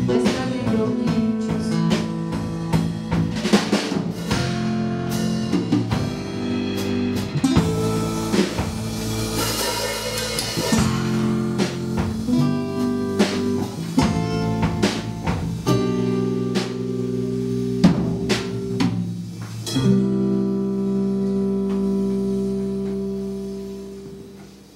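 Live acoustic band music: guitars and bass with percussive strikes, ending on a long held chord that fades away near the end.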